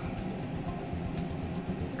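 Steady low hum in a small room, with faint light clicks of necklace beads being handled.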